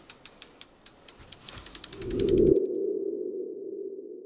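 Logo-animation sound effect: a run of sharp ticks that speed up, building into a swell that peaks about two seconds in, then a steady tone that lingers and slowly fades.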